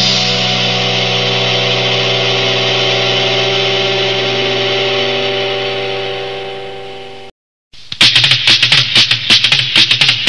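Punk rock track ending on a held final chord that rings and fades away, then a brief silence, then the next punk rock track starts about eight seconds in with fast, loud drum hits.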